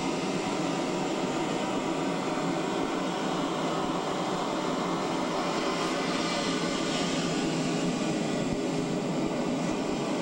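Steady, even rushing noise with no distinct events, like the constant hiss and rumble of a camcorder's own recording.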